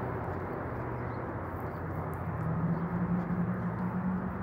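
Steady outdoor city traffic noise, with a low engine hum that grows louder in the second half as a vehicle passes.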